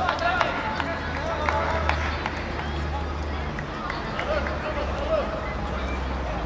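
Shouted voices of players and spectators calling across a football pitch, none of them close, with a few sharp clicks and a steady low rumble underneath.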